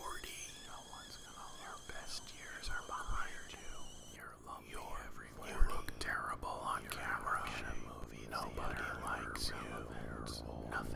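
A person whispering in short, breathy phrases, with a single sharp knock a little past halfway.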